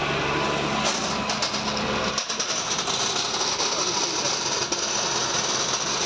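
A small park maintenance vehicle running, noisy and steady. About two seconds in the low engine hum drops away and a steady high-pitched hiss carries on.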